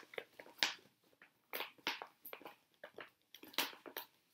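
Clear plastic project bags rustling and crinkling as they are handled, in several short, irregular rustles; the loudest comes about three and a half seconds in.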